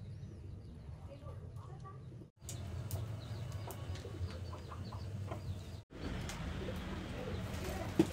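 Soft rustling of soaked sticky rice grains being scooped by hand into bamboo tubes, over a low steady hum with faint bird chirps in the background. The sound cuts out briefly twice.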